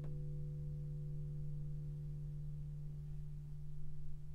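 Eastman E10 OM orchestra-model acoustic guitar with a fingerpicked chord left ringing, several notes sustaining steadily and slowly dying away with no new notes played.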